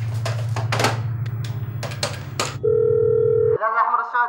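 A landline telephone being handled, with a string of sharp clicks as its keys are pressed to dial, then a steady telephone line tone lasting about a second near the end.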